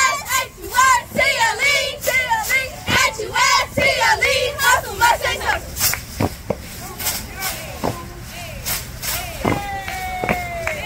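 A squad of young girls shouting a sideline cheer chant together, punctuated by sharp claps; the chanting is loudest for the first half and trails off to fainter voices after about five seconds.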